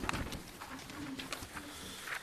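Quiet room tone in a meeting chamber, with faint paper handling and a few soft clicks. A faint low tone comes and goes.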